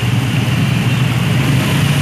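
Congested street traffic: many motorcycle and minibus engines running close by, a steady low engine hum.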